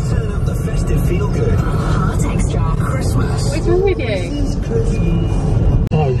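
Steady low rumble of engine and road noise inside a moving car's cabin, with music and indistinct voices over it.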